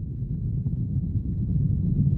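Deep, low rumble building steadily in loudness, a documentary sound-design effect.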